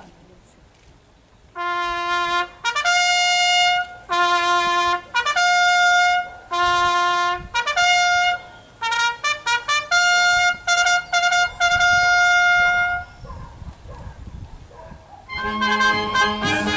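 A solo trumpet plays a ceremonial call of held and short notes. It stops near the end, and a brass band comes in after a short pause.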